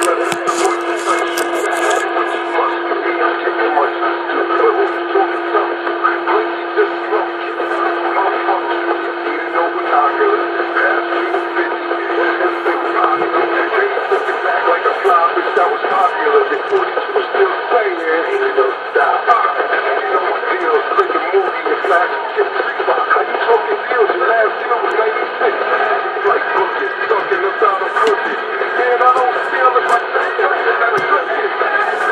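Muffled voices played through a small speaker, thin and narrow in sound, with a steady hum tone underneath that stops about halfway through.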